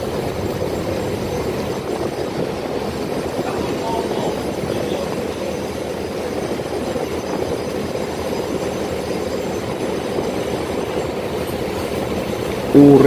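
Small boat's engine running steadily under way, mixed with the rush of water along the hull.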